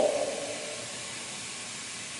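Steady, even hiss with no distinct events, after a man's voice trails off at the start.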